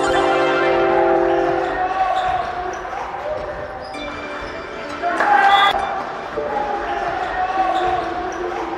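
Basketball bouncing on a hardwood gym floor during live play, with players' voices and held tones in a large hall.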